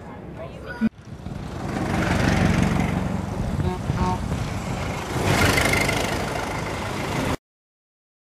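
A Ford Model T's four-cylinder engine running as the car drives past on a road, with road noise, swelling louder twice. The sound cuts off suddenly near the end.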